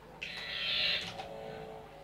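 Electronic sound from a hand-operated lie-detector shock game: a loud, high buzz lasting under a second, followed by a steady lower electronic tone.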